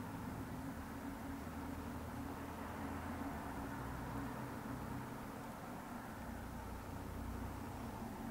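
Quiet room tone: a faint, steady low hum and hiss with no distinct events.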